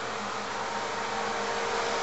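Steady background hiss with a faint constant hum, growing slightly louder across the two seconds.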